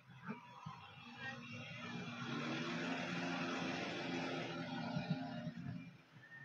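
Farm tractor's diesel engine running as it drives close past while towing a float, growing louder over the first couple of seconds and fading away near the end.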